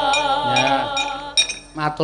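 A Javanese sung vocal line with strong vibrato, held over gamelan accompaniment, ends about a second and a half in. It is followed by sharp metallic clinks of the dalang's kepyak plates.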